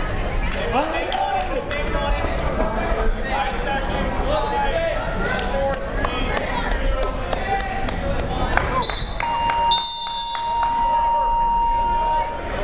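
Shouting voices and sharp knocks echo through a gym. About nine seconds in, a steady electronic tone sounds and holds for about three seconds: a timer buzzer ending the wrestling period.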